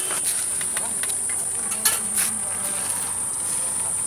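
Steady, high-pitched drone of insects singing in roadside vegetation, with a couple of faint clicks near the middle.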